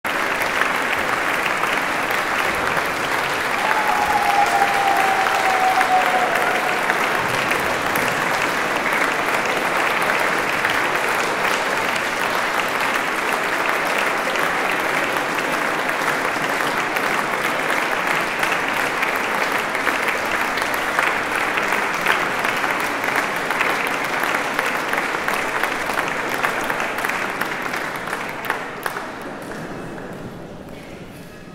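Audience applauding steadily in a church, the clapping thinning and dying away over the last couple of seconds.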